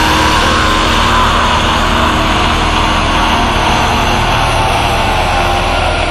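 A loud, harsh droning noise passage within an extreme-metal album track: a dense wash of distorted sound with a whining tone that slowly sinks in pitch.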